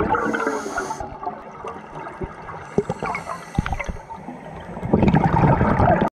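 Scuba breathing through a regulator underwater: a loud rush of exhaled bubbles at the start and again about five seconds in. Between the two rushes there is a quieter, higher hiss of inhaling and a few sharp clicks.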